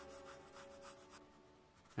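4B graphite pencil rasping on sketch paper in quick, repeated shading strokes that stop a little over a second in. Faint, fading sustained musical tones lie underneath.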